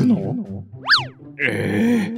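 Edited-in background music with a bouncy bass line. About a second in, a cartoon sound effect: a quick whistle-like slide up in pitch and straight back down. A brief hissy burst follows near the end.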